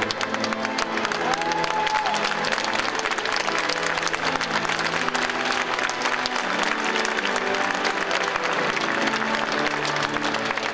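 A crowd applauding steadily over sustained instrumental recessional music.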